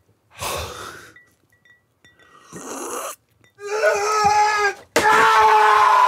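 A man screaming in rage, wordless. Breathy gasping huffs come first, then two long, loud held screams in the second half, the second the loudest.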